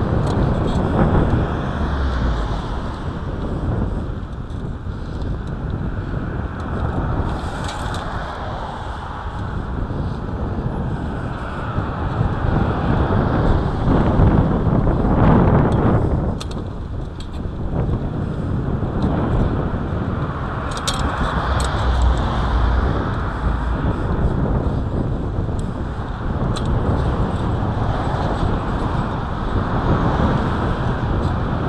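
Skateboard wheels rolling over a concrete sidewalk: a steady rumble that swells and eases, with a few sharp clicks scattered through it.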